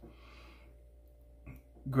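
A soft, faint exhale of cigar smoke lasting about a second, followed by a short mouth sound as the smoker draws breath to speak.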